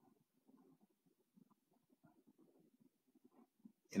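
Near silence: faint room tone with scattered, very soft low sounds.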